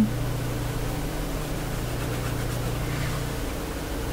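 Steady low electrical or ventilation hum with an even hiss in the room, and no distinct events; the hum eases slightly near the end.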